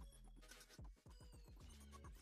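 Faint background music with a steady beat of low kick drums and bass.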